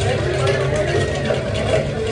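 Indistinct background chatter of other people over a steady low rumble, with no nearby voice.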